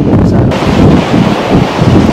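Wind buffeting a clip-on microphone in a loud, gusting rumble, with surf washing on the beach behind it.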